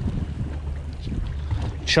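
Steady low rumble of wind on the microphone and water moving against a boat's hull, with a single spoken word near the end.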